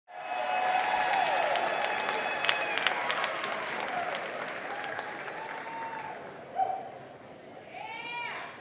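Audience applauding and cheering, with whoops and shouts over the clapping, gradually dying down.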